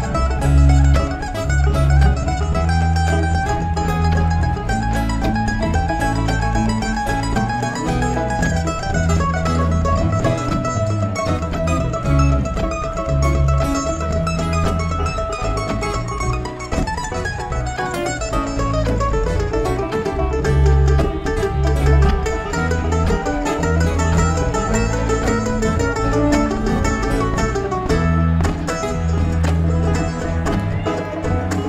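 Live bluegrass string band playing an instrumental break with no vocals: banjo, mandolin and guitar picking over a steady bass line, with a melodic lead line that glides in pitch about halfway through.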